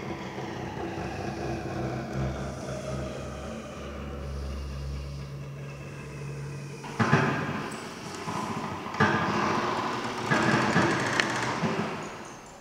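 Double bass bowed on a long, low sustained note, with quieter higher string tones held above it, in a free-improvised contemporary string piece. From about seven seconds in, the held sound gives way to three loud, rough, rasping bursts.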